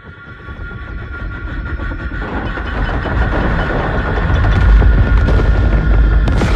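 Action-film sound effects: a steady whine over a low rumble that swells steadily in loudness, becoming a deep, loud explosion rumble in the second half.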